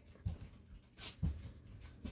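A dog making a few faint, short, breathy sounds.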